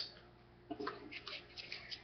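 Baseball trading cards being flipped and slid against one another in the hand: a run of faint, quick ticks and rustles starting a little under a second in.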